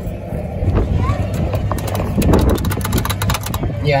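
Steady wind rumble on the microphone with faint voices in the background. From about two seconds in until shortly before the end comes a rapid run of clicks as the kiddie ride's plastic steering wheel is turned.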